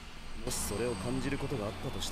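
Japanese anime dialogue: a character's voice speaking, starting about half a second in.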